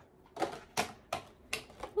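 A handful of sharp, irregular plastic clicks and crackles from thin plastic bottles handled by a toddler.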